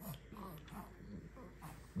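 A few faint, short whimpers from an infant lying on a man's chest.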